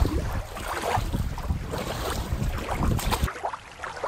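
Wind buffeting the microphone at the water's edge, an uneven low rumble over the wash of shallow water. It cuts off abruptly a little over three seconds in, giving way to a quieter ambience.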